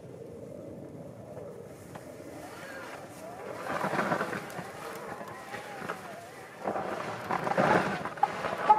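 Fat-tire bike's tyres churning through snow as it turns in a tight circle, louder twice: about four seconds in and again near the end, as the wheels throw up snow close by.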